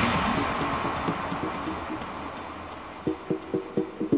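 Techno DJ mix in a breakdown with no beat: a wash of sound fades away, then about three seconds in, short percussive notes start at about four a second.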